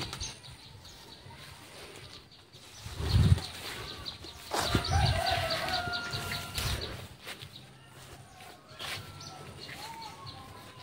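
A rooster crowing once, a long held call of about two seconds that falls slightly in pitch, about halfway through. Low thuds about three and five seconds in, the first the loudest moment.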